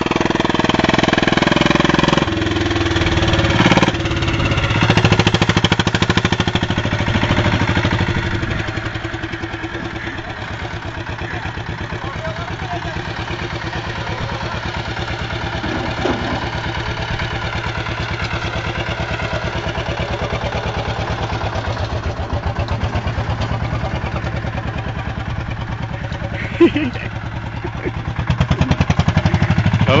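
Patpat farm motor cart's single-cylinder diesel engine running with a rapid, even chugging as the cart is driven about. It is louder for the first several seconds, then steadier and softer as the cart moves away.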